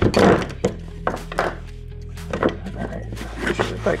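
Background music with a steady bass line, over the handling of a canvas tool tote being opened and filled with hand tools: a loud rustle and thunk at the start, then several short knocks.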